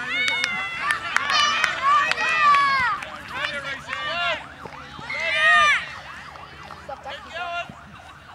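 Several voices shouting and calling out across an open playing field during a junior rugby league game, overlapping high-pitched yells that come loudest about two and five seconds in, with a few sharp clicks.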